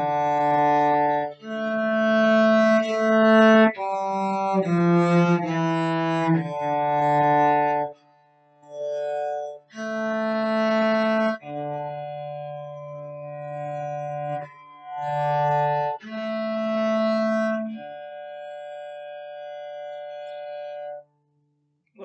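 Cello bowed in long, slow sustained notes, playing a melody that ends on a long held note and stops about a second before the end.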